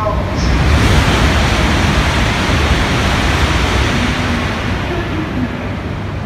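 Broad rushing noise of a shinkansen at a station platform. It swells about a second in and fades gradually over the next few seconds.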